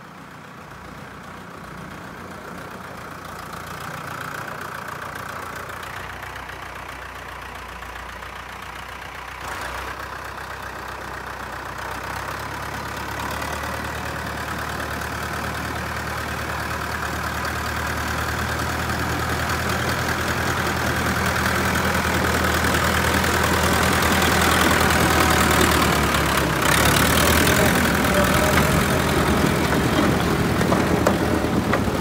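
Mercedes-Benz MB Trac 65/70 tractor's four-cylinder diesel engine running steadily under the work of its snow blower, growing steadily louder as it comes closer, with a brief break in the sound near the end.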